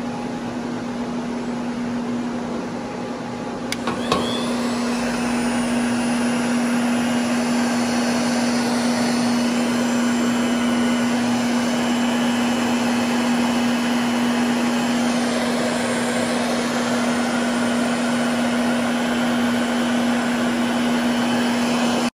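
Chicago Electric heat gun running from a cold start: its blower motor gives a steady, loud hum over rushing air. After a click about four seconds in it gets a little louder.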